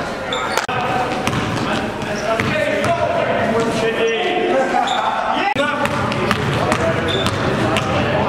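Live sound of an indoor basketball game: a basketball bouncing and hitting the rim, with players' voices calling out, echoing in a large gym.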